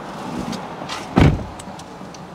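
A car door slammed shut once, a single heavy thud.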